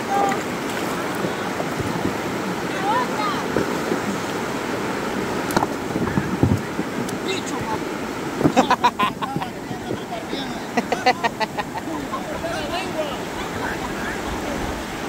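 Shallow river water rushing steadily over a line of stones. Faint voices come through, and about halfway in there are two quick runs of short, sharp sounds, several a second.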